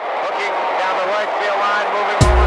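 Intro of a hip-hop track: a sampled voice over a noisy bed, before the drums come in.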